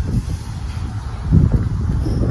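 Wind buffeting the microphone: a low rumble that gusts up about one and a half seconds in.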